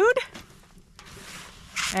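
A woman's voice ending a sentence, then a pause of about a second and a half with only a faint hiss, and a short breathy noise just before she speaks again.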